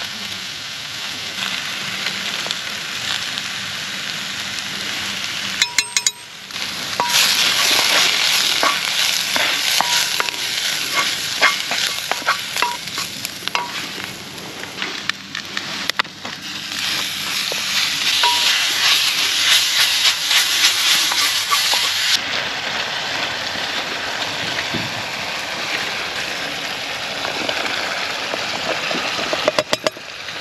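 Food sizzling and being stirred in a cast-iron Dutch oven over a wood fire, as onions with paprika and then beef fry. The sizzle swells loud for two long stretches, with abrupt breaks between shots.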